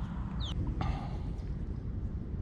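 Outdoor background with a steady low rumble and a single short, high, falling bird chirp about half a second in.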